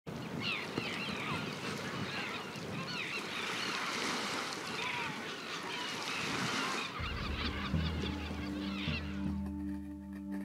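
A flock of birds calling, many short rising and falling cries, over a steady wash of noise; about seven seconds in, the birds and the wash stop and music with low sustained tones comes in.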